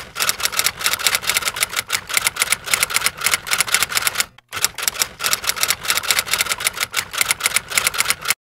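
Typewriter key strikes as a sound effect: quick, even clacking at about seven strikes a second, with a brief break about four and a half seconds in.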